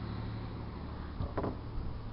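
Pickup truck driving past on a snow-covered street, a steady low engine hum under a haze of road and wind noise, with one brief short noise about one and a half seconds in.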